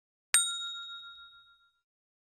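A single bright notification-bell 'ding' sound effect: one strike about a third of a second in, ringing out in a clear few-toned chime that fades over about a second and a half.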